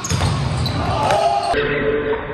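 A volleyball struck hard at the net as a spike meets the block, with a second sharp ball impact about a second later. Players shout and call out, echoing in the gym hall.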